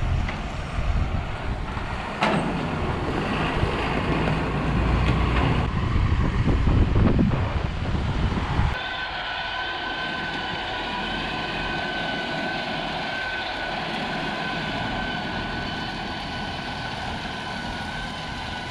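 John Deere 7130 tractor running with a three-point New Holland 617 disc mower, a loud rumbling engine and driving noise for the first half. About nine seconds in, the sound cuts to the tractor mowing standing sorghum: the engine under load with a steady high-pitched whine from the running disc mower.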